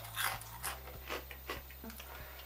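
A person chewing a mouthful of light, crispy puffed-rice snack, with a few faint, irregular crunches.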